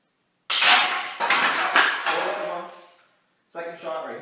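Homemade spring-powered double-barrel airsoft shotgun firing a paper shell of BBs: a sudden loud snap about half a second in, then sharper hits and clatter as the shot strikes cans, dying away over about two seconds. A second, quieter sudden burst comes near the end.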